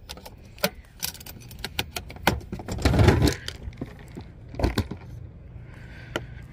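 Sharp clicks and rattles of a hard plastic DeWalt power-tool case being latched shut and handled, with a heavier thud about three seconds in and another near five seconds in as the loaded case is set down.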